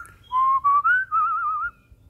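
African grey parrot whistling: three short notes stepping up in pitch, then a wavering, warbled note of about half a second.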